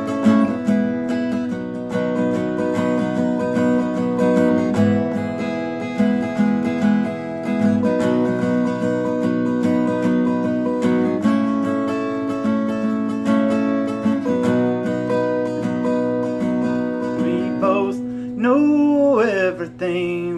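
Acoustic guitar strummed, sustained chords changing every couple of seconds. A man's singing voice comes in near the end.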